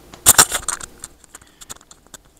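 Clip-on microphone being handled and clipped on, heard through the microphone itself: a loud cluster of rubbing and clicks about a quarter second in, then scattered small ticks and knocks.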